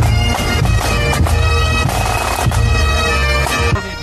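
Pipe band playing: Highland bagpipes sounding steady drones under the chanter melody, with regular drum strokes beneath.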